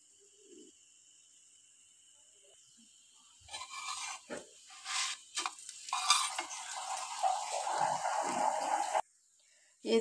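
A paratha frying in ghee on a tawa, pressed and moved with steel tongs. After a near-silent start, scraping and rustling begin about three and a half seconds in, then a steady sizzle runs until it cuts off suddenly about a second before the end.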